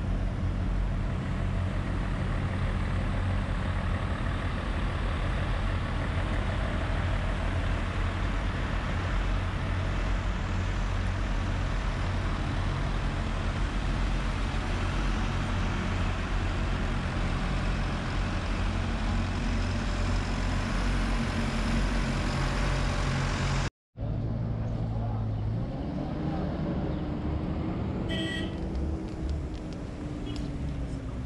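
Heavy diesel truck engine idling: a steady low hum with hiss. It stops abruptly about 24 seconds in at a cut. After the cut comes a different engine sound whose pitch slowly rises and falls, with a few clicks near the end.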